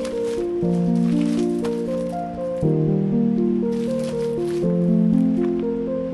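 Background music: held notes over chords that change about every two seconds. Brief crinkling of plastic bubble wrap sounds over it as the package is handled, about a second in and again about four seconds in.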